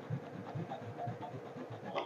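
Faint scratching of coloured pencils on paper: quick, irregular back-and-forth shading strokes, several a second.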